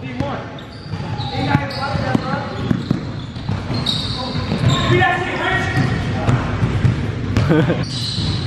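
Basketball bouncing on a hardwood gym floor during play, irregular thuds ringing in a large hall, with voices.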